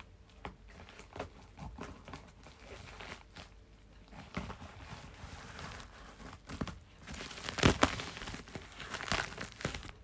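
Scissors cutting into the black plastic wrapping of a parcel, the plastic crinkling and tearing with small snips and rustles. The crinkling is loudest in a burst about three-quarters of the way through and again near the end.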